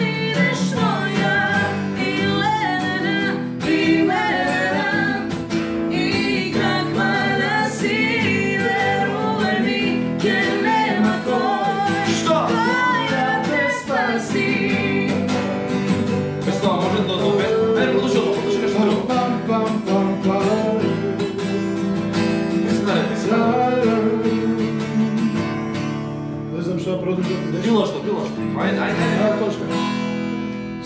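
Acoustic guitar strummed as accompaniment to live singing, with a woman's and a man's voices singing a song.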